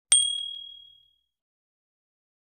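A single bright ding sound effect, a bell-like chime of the kind laid under a subscribe-button animation, struck once just after the start and ringing out over about a second.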